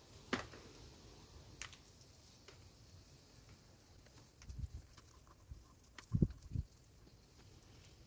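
Faint crackling and rustling of bunches of dried mountain thyme being handled and picked clean of stray stems by hand, with a few light ticks early on and several soft knocks later.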